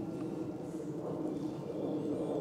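Quiet outdoor background with a dove cooing faintly.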